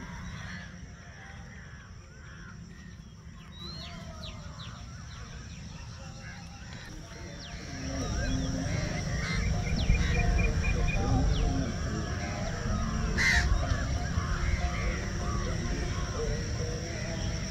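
Many birds calling and chirping outdoors over a steady high-pitched drone, with a low wind rumble on the microphone. The calls grow louder about halfway through, and a short run of evenly repeated calls comes just after that.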